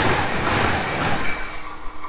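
ICE high-speed train passing through a station at speed: loud rolling noise with a regular clatter of wheelsets over the rails. The noise falls away about a second and a half in as the tail car goes by, leaving a faint receding hum and whine.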